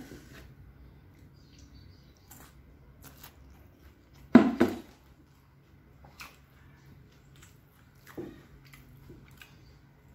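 Eating sounds from a person chewing a mouthful of rice and sambal: faint wet mouth clicks and smacks, with one louder double sound about four and a half seconds in and a few softer clicks scattered through.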